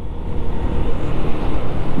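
Steady wind and road noise of a Honda Biz 100 step-through motorcycle riding along, heard from the rider's handlebar camera.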